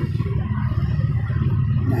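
A steady low rumble that runs throughout, with a word spoken right at the end.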